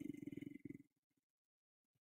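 A man's voice trailing off in a low, rattly drawl during the first moment, then near silence.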